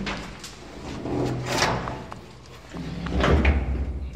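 Clunks and rattles of metal switchgear cabinet doors and panels being handled: several separate knocks, with the loudest, deepest clatter about three seconds in.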